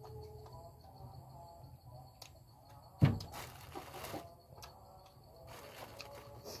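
A person chewing a mouthful of noodle soup, with doves cooing in the background. A sharp thump about three seconds in is followed by about a second of rushing noise.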